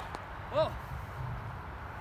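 A man's short exclaimed "whoa" over a steady low outdoor rumble, with a faint click just before it.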